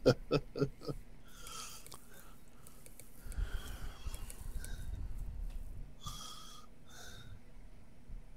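A man's laughter trailing off in quick pulses during the first second, then several short, faint breaths into a headset microphone.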